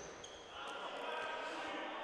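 Faint sound of a futsal game in an indoor hall: a few light ball touches and distant players' calls.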